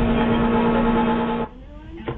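In-car dashcam audio of a car leaving the road: loud rumbling road and impact noise with a steady droning tone over it, which cuts off abruptly about one and a half seconds in, leaving a much quieter cabin with a few light clicks.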